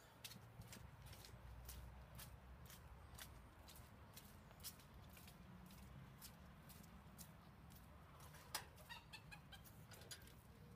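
Faint footsteps on a dirt path, about two a second, over a low rumble of wind and handling on the phone's microphone. Near the end comes a short run of chicken clucks.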